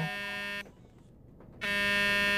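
A steady buzzing tone at one flat pitch sounds for a moment, cuts off about half a second in, and starts again after about a second's pause.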